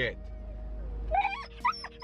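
Siberian husky whining and whimpering in a series of short, high cries that rise and fall in pitch, starting a little over a second in, an eager dog impatient to get going.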